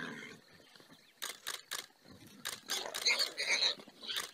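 Wild boar squealing under a leopard's bite, one longer squeal about three seconds in, with a few sharp clicks before it.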